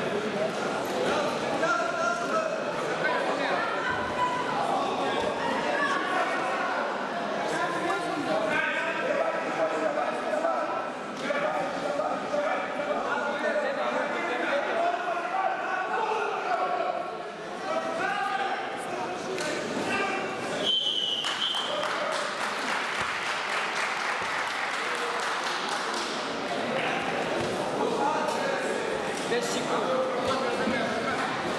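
Echoing hubbub of overlapping voices in a large sports hall: people calling out and talking around a wrestling bout, with no single voice clear. A short high-pitched tone sounds about twenty seconds in.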